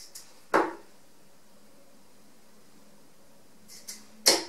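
A Harrows Elite 23 g tungsten steel-tip dart thrown and striking a bristle dartboard once, a sharp thud about half a second in, just after a faint swish of the throw.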